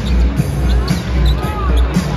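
Arena sound-system music with a heavy, pulsing bass beat, over a basketball being dribbled on the hardwood court during live play.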